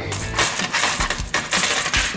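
Small plastic game chips rattling and clattering together as the Match 4 set is handled, a dense run of quick clicks.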